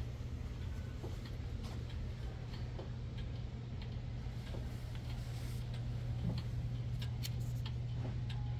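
Mechanical clocks ticking, light clicks about once or twice a second, over a steady low hum.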